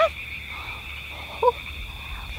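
A steady, high-pitched chorus of frogs calling without pause.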